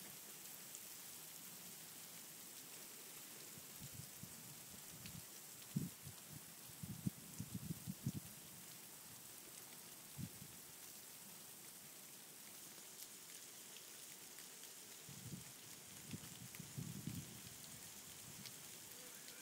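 Freezing rain falling steadily, a faint even hiss. A few soft low knocks come in clusters about a third of the way in and again near the end.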